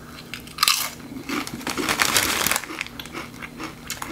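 A person biting into a ketchup Doritos tortilla chip with a sharp crunch a little over half a second in, then chewing it with dense, crisp crunching that thins out over the last second or so.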